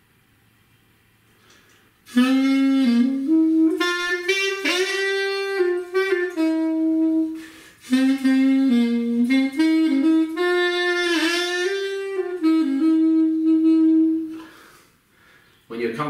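A Saxmonica, a small black reed wind instrument with a saxophone-style mouthpiece, playing a short melody starting about two seconds in. There are two phrases of stepping notes, and the second ends on a long held note.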